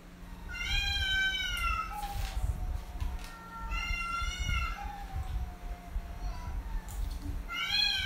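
A woman imitating a cat with her voice, giving three long, high-pitched meows a few seconds apart.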